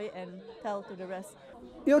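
Speech only: a woman talking quietly, with a louder voice starting right at the end.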